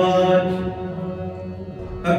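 Shabad kirtan: a man's voice holding a long sung note over a sustained harmonium chord, dying away over the second half.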